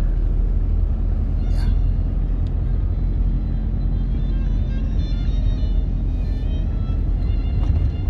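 Steady low road and engine rumble inside a moving car's cabin, with music playing over it; the music's held notes come through more clearly in the second half.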